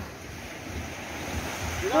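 Surf on a beach with wind buffeting the microphone: a steady, even noise with an uneven low rumble. A voice breaks in with a short laugh right at the end.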